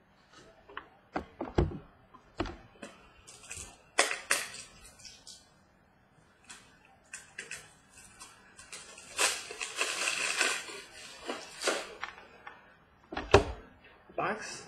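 Scattered clicks, taps and knocks of trading cards and card boxes being handled and set down on a table. A longer rustling, sliding stretch comes about nine seconds in, and a sharp knock comes near the end.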